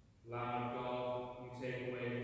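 Priest's voice chanting the liturgy on a near-steady pitch: one long held note, then a second note starting about one and a half seconds in.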